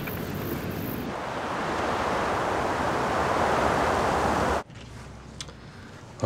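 A car driving: a steady rush of road and wind noise that swells a little, then cuts off suddenly about four and a half seconds in, leaving quiet room tone.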